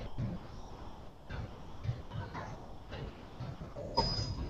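Typing on a computer keyboard: irregular, light key clicks over a faint room background.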